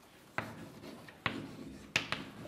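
Chalk writing on a blackboard: three sharp taps as the chalk strikes the board, about half a second in, after about a second and a quarter, and near the end, with faint scraping between them.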